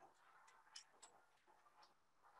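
Near silence: faint room tone in a large hall, with a few soft clicks.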